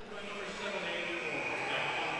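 Faint, steady ice-hockey arena background under a broadcast, with no distinct hits or shouts.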